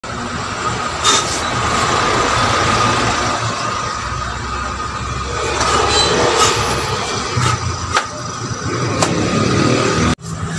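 Steady din of street traffic, broken by a few sharp slaps of a barber's hands striking a customer's head during a head massage.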